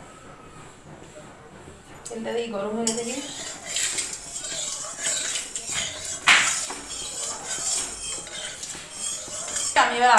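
Metal utensils clinking and knocking against an aluminium kadai on a gas stove, with the sharpest clank about six seconds in, over a steady high hiss.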